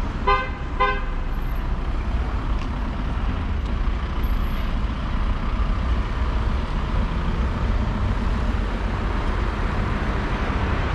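A car horn tooting twice in quick succession, just after the start, over steady street traffic noise with a low rumble.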